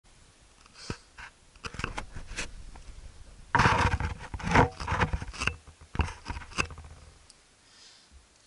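Handling noise from a camera being fitted and adjusted on a car dashboard: a string of clicks and knocks with scraping and rubbing close to the microphone, loudest around the middle and dying away near the end.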